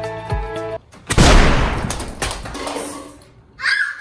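Background music with a steady beat cuts off, and about a second later a rubber-band-wrapped watermelon bursts with a loud, sudden pop. The pop fades over about two seconds with a few smaller clicks of pieces and rubber bands landing, and a short burst of sound follows near the end.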